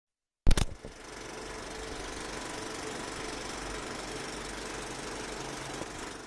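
Old film projector sound effect: a sharp click about half a second in, then a steady mechanical rattle with hiss and a low hum.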